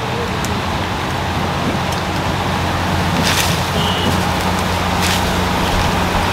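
Onions and whole spices frying in hot oil in a metal handi: a steady sizzle over a steady low burner roar, with two brief louder hisses about three and five seconds in.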